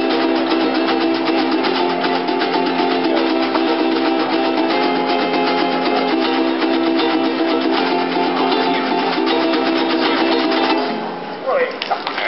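Acoustic guitars strummed fast and steadily together with a drum, playing a live song that cuts off sharply about eleven seconds in. Voices follow at the very end.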